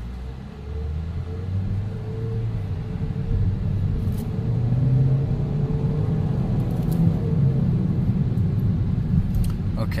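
The 2017 Chevy Cruze hatchback's turbocharged four-cylinder engine is heard from inside the cabin under hard acceleration. It is pretty loud, rises in pitch as the revs climb, and grows louder over the first few seconds.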